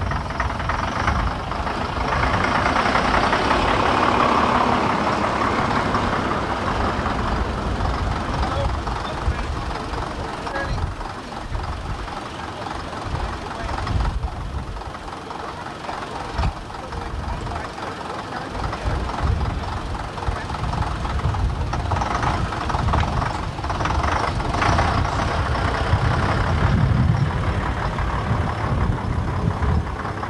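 Vintage single-deck bus engine running, a steady low rumble, louder in the first few seconds, with voices in the background.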